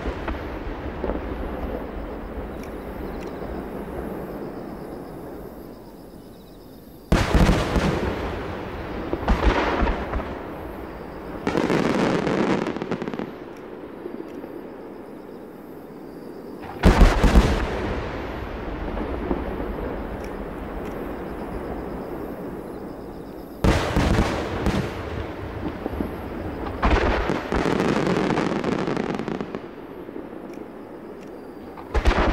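Large 30 cm (No. 10) aerial firework shells, fired six at a time, bursting with heavy booms. Sharp reports come every few seconds, some in quick pairs, and each trails off in a long rolling echo.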